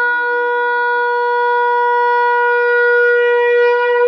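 Shofar sounding one long, steady blast on a single held note.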